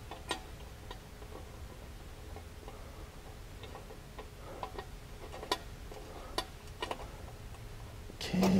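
Faint, irregular small metallic clicks and ticks as a bolt is started by hand into a mounting clamp behind a metal skid plate on a side-by-side's underside, with the plate shifting against it.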